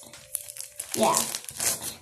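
Crinkling, crackly rustling with a faint steady tone in the first second, and a child saying 'yeah' about halfway through.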